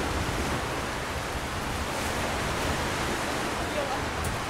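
Steady rushing noise of wind and small waves breaking on a bay shore.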